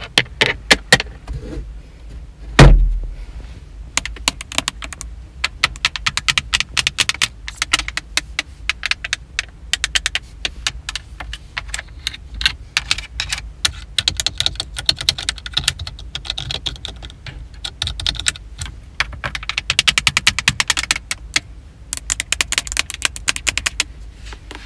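Long fingernails tapping rapidly on car interior plastic, first the sun visor's vanity mirror cover and then the glossy centre-dash control panel, in quick flurries of clicks. A single heavy thump about two and a half seconds in is the loudest sound.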